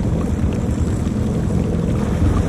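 Personal watercraft (WaveRunner) engine idling at a standstill: a steady low rumble.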